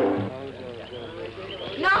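A group's held sung note fades out just after the start, leaving only faint voices in the background. Near the end a man shouts a call to lunch.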